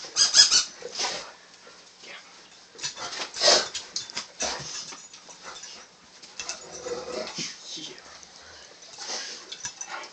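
Dogs vocalizing excitedly in short, high bursts during rough play with a person. The loudest bursts come about half a second in and again about three and a half seconds in.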